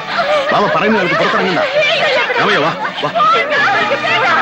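Several women's voices crying and wailing at once, overlapping and unsteady in pitch.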